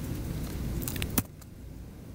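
Computer keyboard clicks: a few quick key taps, then one sharp, louder key click a little after a second in, over a low rumble that drops away at that click.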